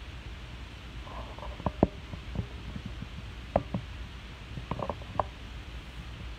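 A steady low rumble of room noise with a few small sharp clicks and knocks: two close together just under two seconds in, one more past the middle, and a quick cluster near the end.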